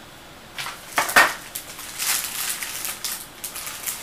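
Clear plastic packaging bag crinkling and rustling as it is handled, in irregular bursts, the loudest about a second in.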